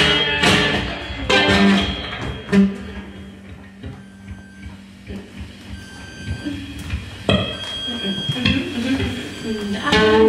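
Live improvised music: a woman's held sung notes over plucked strings, dropping about two and a half seconds in to a quieter stretch of thin, steady high electronic tones and wavering vocal sounds that build again near the end.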